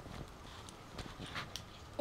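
Faint rustling and a few soft, scattered knocks as clothes on plastic hangers are handled.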